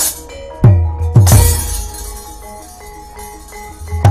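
Javanese gamelan accompaniment for a wayang kulit shadow-puppet scene. Steady bronze metallophone tones ring under three heavy kendang drum strokes, each with a falling boom, in the first second and a half. Crashing clashes of the dalang's kecrek metal plates come at the start and with the drum strokes.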